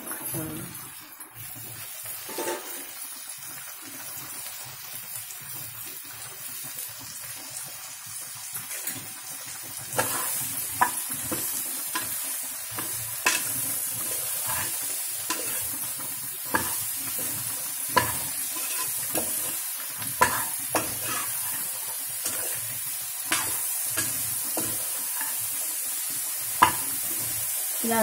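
Chopped bottle gourd sizzling as it fries in a pressure cooker, stirred with a metal ladle that clicks and scrapes against the pot now and then. The sizzle and the ladle strikes get louder about ten seconds in.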